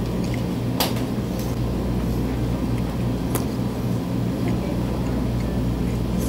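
Steady low machine hum in a small room, with two short faint clicks, one about a second in and one near the middle.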